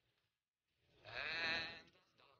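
A single bleat-like call, wavering in pitch, lasting about a second and starting about two-thirds of a second in.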